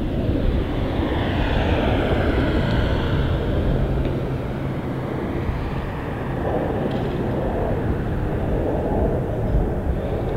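Fixed-wing aircraft flying over: a steady rush of engine noise whose tone sweeps in the first few seconds, with a low hum beneath.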